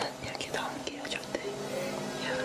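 A person whispering quietly at night, with faint steady music tones underneath.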